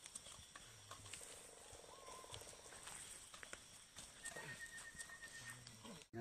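Near silence: faint outdoor background hiss with a few soft clicks.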